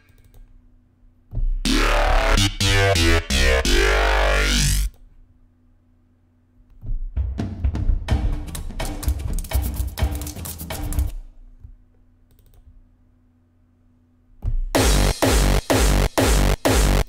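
Preset previews from the ReFX Nexus 2 software synthesizer, played as three separate electronic phrases with short pauses between them. The first starts about a second and a half in, with tones sweeping up and down over heavy bass. The second, a sequenced pattern, comes about seven seconds in, and near the end a third begins with choppy, rapidly repeated hits.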